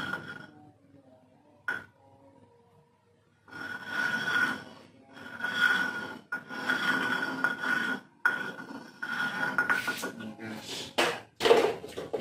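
Hands mixing and scraping a wet flour-and-filling dough around a mortar bowl, in repeated rough rubbing and scraping stretches with short pauses between them.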